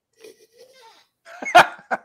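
A man laughing: a few short, breathy bursts starting about halfway through, after a nearly quiet moment.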